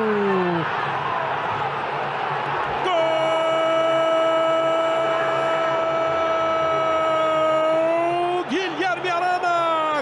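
Stadium crowd cheering a goal, then a TV football commentator's long held shout of "gol" on one steady note for about five seconds, over the crowd. Short excited commentary follows near the end.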